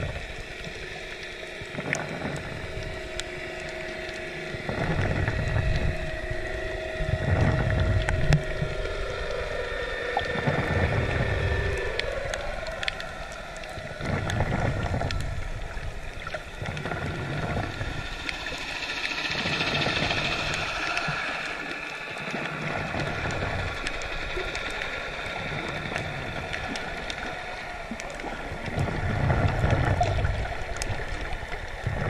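Underwater sound picked up by a camera on a coral reef: muffled rushing water with repeated low surges, and a few steady humming tones underneath that slide in pitch about ten seconds in.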